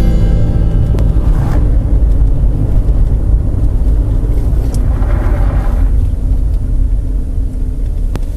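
Steady low rumble of a car's engine and tyres on a snowy road, heard from inside the recording car's cabin.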